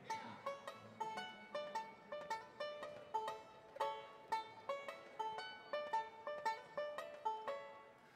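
Acoustic plucked-string instrumental introduction to a folk song: a single picked melody of evenly spaced notes, a few each second, each ringing briefly.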